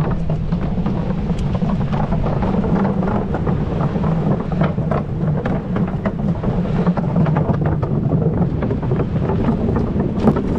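Wind buffeting the microphone: a loud, steady low rumble broken by frequent crackles.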